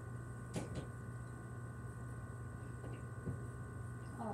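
A steady low background hum, with a few faint, brief clicks: two just after half a second in and another a little past three seconds.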